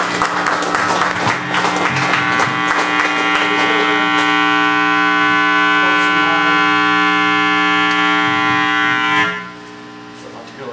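Live rock band with electric guitar, bass and drums playing loud, the drums hitting hard for the first few seconds, then a single amplified chord held ringing for about six seconds before it cuts off suddenly near the end.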